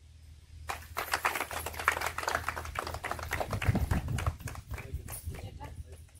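A small group of people clapping, starting about a second in and thinning out near the end, over a low steady hum.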